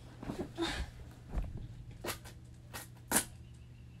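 A few sharp clicks and knocks, the loudest a little after three seconds in, as a painted glass jar is handled and lifted from the table, over a steady low hum.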